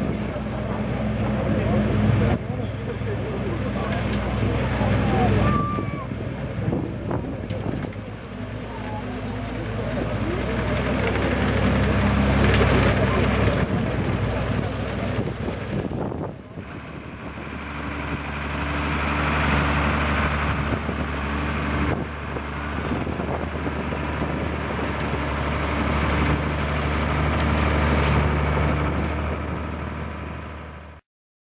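Fendt 514C tractor engine running steadily under load while driving a Claas Liner 2900 twin-rotor rake through cut grass. The sound breaks off sharply about halfway through, then the same kind of steady engine note carries on.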